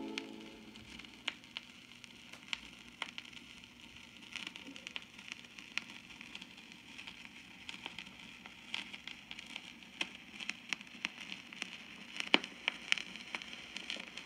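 Surface noise of a 1957 Philips 10-inch 33 rpm vinyl record after the music ends: faint hiss with irregular crackles and pops as the stylus runs on through the quiet groove. The last of the orchestral music dies away in the first half-second.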